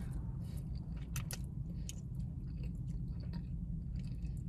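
A person eating thick, chewy fresh-cut noodles: quiet chewing with scattered short wet mouth clicks, over a steady low hum.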